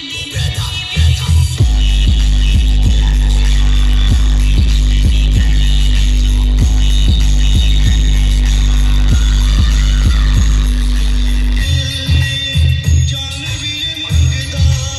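Loud electronic dance music from a DJ truck's sound system of 22 bass speakers. Pulsing bass beats give way, about two seconds in, to a long, sustained deep bass note under a ticking beat of about three strokes a second; near the end the pulsing beats return.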